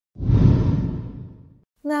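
A whoosh transition sound effect with a deep rumble. It swells up quickly and fades away over about a second and a half.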